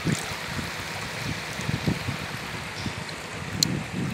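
River water running and lapping around a bamboo raft, with wind buffeting the phone's microphone. A single sharp click comes near the end.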